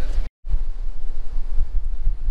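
Wind buffeting the camera microphone, a steady low rumble, cutting out to silence for a moment just after the start.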